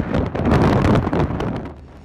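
Strong wind buffeting the camera's microphone close to a tornado, a loud rushing noise that fades near the end.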